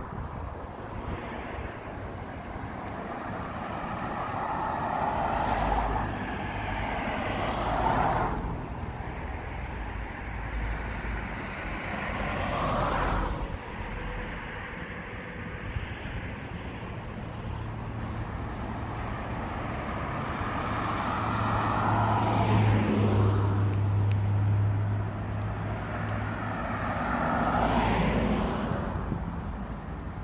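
Road traffic: cars passing one after another, each swelling and fading away, about five pass-bys, with a steadier low engine hum during the second half.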